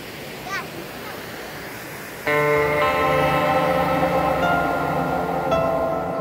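Water rushing over shallow creek rapids, with a brief voice just after the start. About two seconds in, it cuts abruptly to louder music: sustained keyboard chords held over several seconds, with a change of notes near the end.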